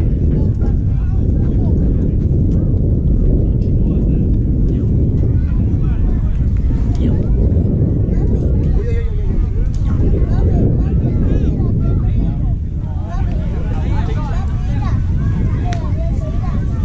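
Wind rumbling on the camera microphone, with faint voices of players and spectators calling out across the field, more of them near the end.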